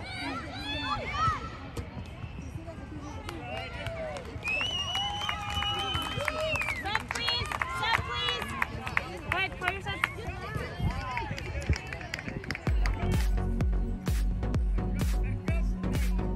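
Sideline voices at a youth soccer game, with scattered shouts and calls and one longer held call about five seconds in. Near the end, music with a heavy, steady beat comes in.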